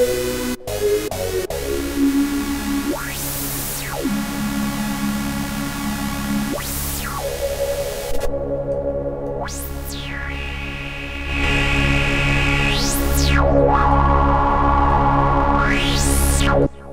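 FXpansion Strobe2 virtual-analogue software synthesizer holding a low, harmonically rich note while its resonant filter is swept up and down about five times. The filter's tone changes abruptly about eight seconds in as a different filter type is selected. The note gets louder near the end.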